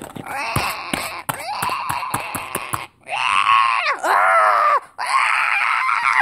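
A person's voice screaming and groaning in play-acted alarm. First comes a long, rough cry, then three shorter screams that rise and fall in pitch.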